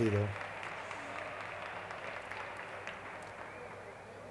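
Applause and crowd noise echoing in an indoor sports hall, dying away gradually.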